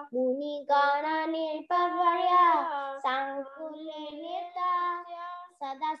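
Children chanting Sanskrit verses to a slow sung melody, with held and gently bending notes in phrases and short breaks for breath between them.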